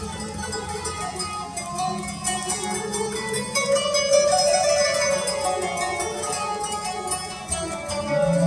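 Kanun (Turkish plucked zither) and oud playing an instrumental introduction in makam Nihavend, with quick plucked notes and running melodic lines.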